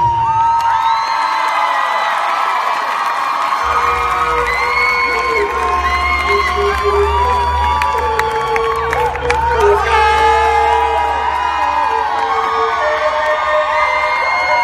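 Large crowd cheering and whooping, full of short high shrill calls, just as the dance music cuts off. A low steady drone comes in under the cheering about four seconds in.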